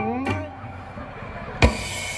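A single loud drum hit about one and a half seconds in, with ringing hanging on after it: a stage band's accent punctuating a comic bit. Just before it, the tail of a performer's drawn-out, gliding vocal fades out right at the start.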